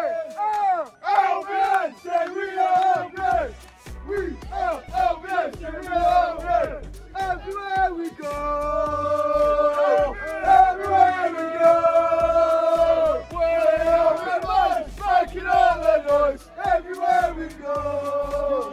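A group of football supporters chanting and singing together, holding long notes in the middle, over music with a steady beat that comes in about three seconds in.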